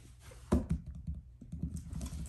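Pomsky puppy's claws clicking on a laminate floor as it walks, an irregular run of light taps, with one sharper knock about half a second in.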